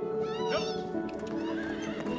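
A horse whinnies briefly about half a second in, over soft film-score music with steady held notes.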